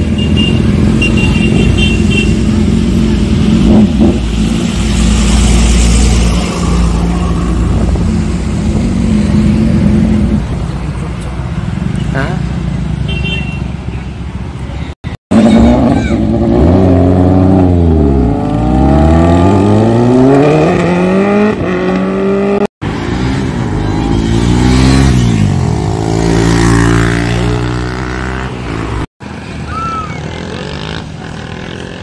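Sport motorcycle engines running and passing, then revving up and down again and again, the pitch rising and falling, in several short takes that cut off abruptly.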